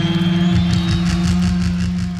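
Live metal band ringing out a closing chord: distorted guitars and bass hold one loud chord. A fast run of hits joins it about half a second in and tapers off near the end.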